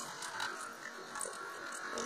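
Water sloshing and gurgling in an upturned plastic bottle as it is swirled, with a trickle running out of the neck into a metal sink. It is fairly quiet, with scattered small clicks.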